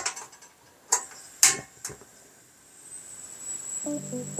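A few sharp metallic clicks and knocks from handling a lead-casting mould on the grill grate of a portable gas cartridge stove, then a faint hiss with a thin high whine that grows near the end as the stove heats the mould.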